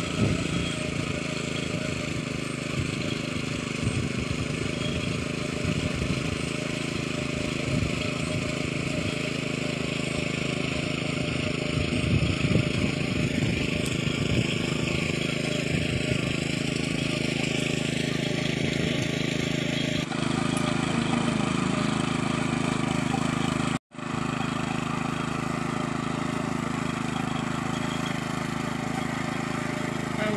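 Walk-behind power tiller's engine running steadily under load as it churns through a flooded paddy field. The sound drops out for an instant about three-quarters of the way through.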